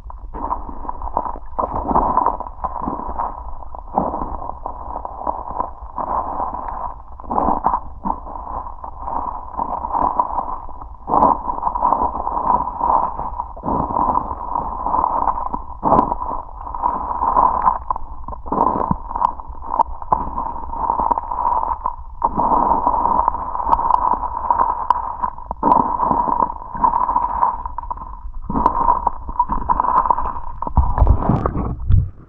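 Muffled water sounds picked up by a camera held underwater in a river: irregular gurgling and sloshing surges over a constant low rumble.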